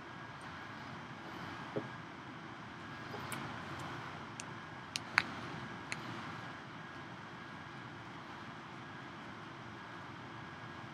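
Steady room noise in a quiet lecture room, with a handful of small clicks and taps between about two and six seconds in.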